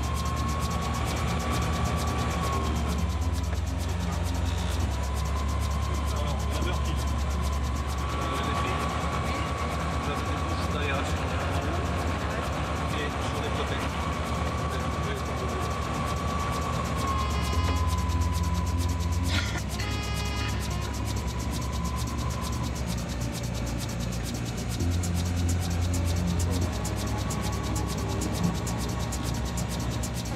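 Diamond DA40 light aircraft's engine and propeller running at low taxi power, heard inside the cabin as a steady low drone with a steady high whine over it. Brief clicking about two-thirds of the way through.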